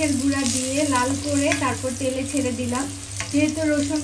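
Garlic cloves sizzling in hot oil in a non-stick wok while a wooden spatula stirs them. A steady hum and a wavering pitched sound run over the frying throughout.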